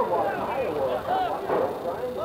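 Many voices shouting and calling out at once from players and onlookers around a football field, overlapping so that no one voice stands clear.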